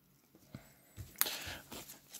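Faint handling of a trading card and a clear plastic card sleeve: a few light clicks, a sharper one a little past a second in, then soft plastic rustling as the card is slid into the sleeve.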